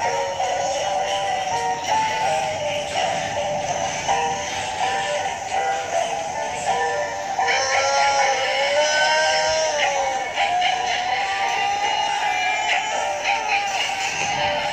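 Cartoon song with high-pitched synthetic-sounding voices singing over music, played through a tablet's speaker.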